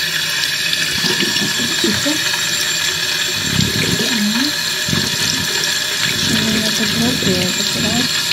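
Bathtub tap turned on suddenly and then running steadily, its stream splashing into a plastic water pistol held under the spout to fill it.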